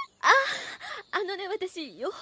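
A woman's voice in Japanese anime dialogue: a short gasp, then hesitant, wavering speech.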